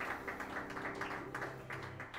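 Scattered hand clapping from a small audience, a few claps at a time at an uneven pace. Under it the trio's last low piano and upright-bass notes ring on and fade out near the end.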